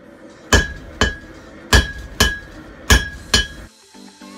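Hand hammer forging red-hot steel held in tongs on an anvil: six sharp, ringing blows, falling roughly in pairs.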